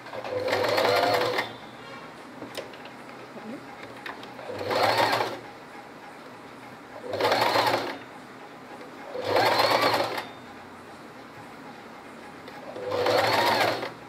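Electric domestic sewing machine stitching in five short runs of about a second each, the motor's pitch rising in each run as it speeds up, with pauses of two to three seconds between runs.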